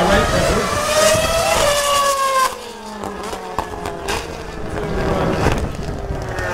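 Formula 1 car's engine passing at speed, its pitch falling steadily as it goes by and pulls away, fading after about two and a half seconds.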